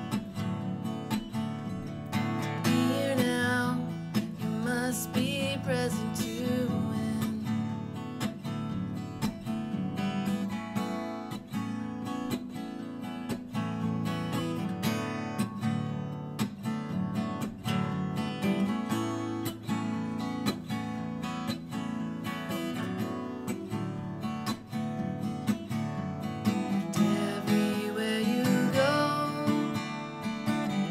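Acoustic guitar strummed steadily through an instrumental break in a folk song, played live.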